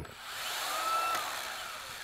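Makita 18V LXT brushless cordless drywall sander's motor running briefly, with a whirring whoosh from the pad and fan. It spins up gradually with its soft start, peaks about a second in, then winds down with a falling whine.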